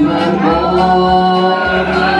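Live duet: a woman and a man singing long held notes together over a strummed acoustic guitar.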